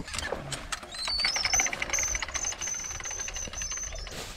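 Geared electric-fence reel being wound in, reeling up polywire: a few knocks, then from about a second in a fast, even clicking with a high whine that rises in pitch and then holds steady.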